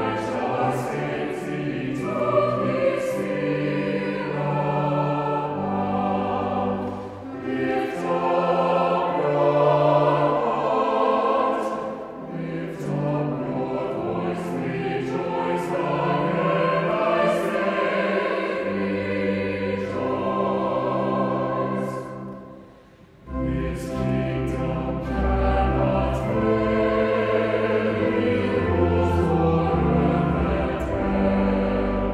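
Church choir singing a hymn in parts, in sustained chords with crisp 's' sounds. About two-thirds of the way through, the sound briefly dies away, then comes back fuller with a deep bass underneath.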